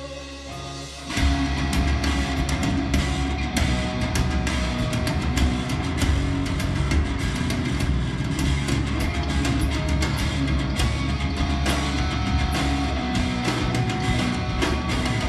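Live rock band: a quiet held passage, then about a second in the full band comes in loud with drum kit and guitars, playing a steady driving beat.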